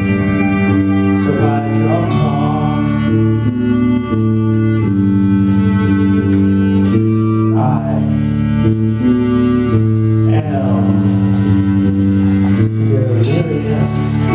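Live indie rock band playing a song: sustained chords from guitar and low strings over drums with repeated cymbal hits, and a singing voice coming in at a few points.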